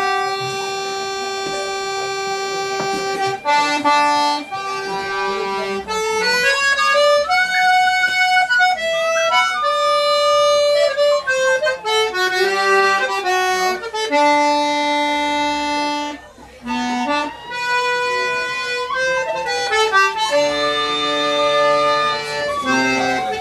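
Tin whistle playing a lively Irish traditional tune, with a lower-pitched second instrument playing along. The notes step quickly through the melody, with a short lull about two-thirds of the way through.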